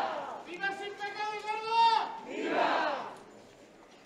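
A crowd's shouted answer trails off at the start; then a man shouts a long, held call and the crowd shouts back once in answer, a call-and-response of vivas to the Virgin.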